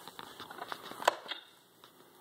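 A few light clicks and taps of small plastic toys being handled, with one sharper click about a second in.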